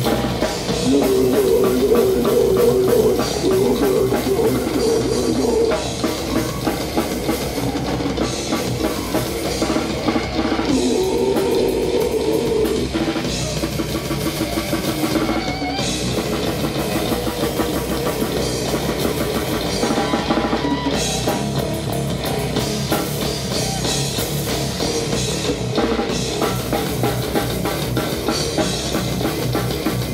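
Metal band playing live: electric guitar riffs over a drum kit, loud and continuous.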